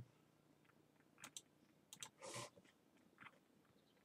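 Near silence: quiet room tone with a few faint short clicks, and a brief soft noise about two seconds in.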